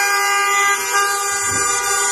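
Several vehicle horns held down at once, making a loud, steady chord of overlapping tones, with some pitches changing about a second in.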